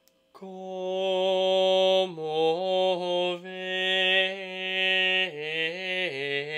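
A solo male voice singing Gregorian chant unaccompanied, coming in about a third of a second in after a brief pause. It holds long, sustained notes and steps down and back up between a few closely spaced pitches.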